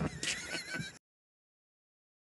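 High, wavering laughter trailing off, then the sound cuts out abruptly about a second in.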